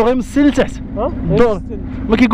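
A man's voice in short, hesitant drawn-out 'ah' sounds, over a steady low engine hum from a motorcycle idling in stopped traffic.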